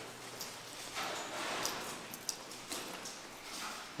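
Footsteps on a hard floor while walking, with rustle from the handheld camera and a few irregular light clicks.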